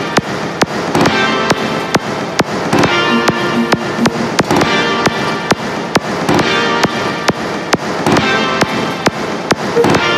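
Instrumental karaoke backing track (MR) of a pop song in G minor at 135 beats a minute, with no vocal. Sharp percussion hits land evenly on the beat, about two a second, over keyboard and instrument parts.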